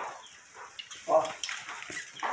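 A few faint clicks and taps over a quiet hiss, with one short spoken word about a second in.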